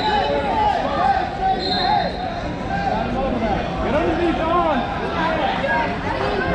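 Babble of many overlapping voices calling out in a large, echoing tournament hall, with no single voice standing out.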